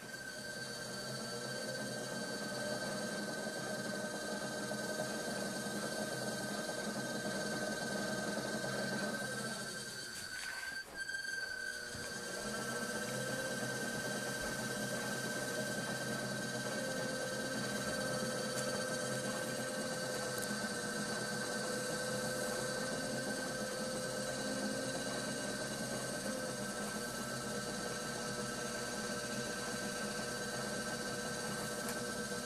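Electric pottery wheel's motor running with a steady hum. About ten seconds in its pitch and loudness sink briefly, as the wheel slows, then come back up to speed.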